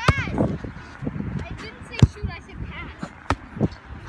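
A child's short shout at the start, then a few scattered sharp thumps, the loudest about two seconds in.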